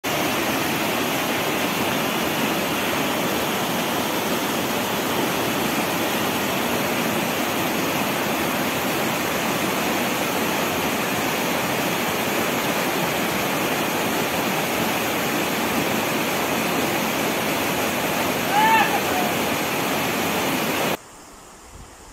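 Loud, steady rush of muddy floodwater in a swollen mountain creek, with one short high-pitched call near the end. The rush cuts off suddenly about a second before the end.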